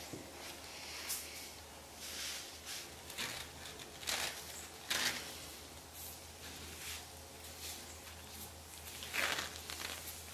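Cloth rustling as hands brush over and handle a woven blanket on a yoga mat, in several short swishes, over a low steady hum.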